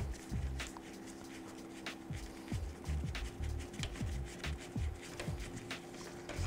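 Soft background music of held chords that shift about two and a half seconds in. Under it, faint clicks and low taps come from a Phillips screwdriver working the taillight mounting screws.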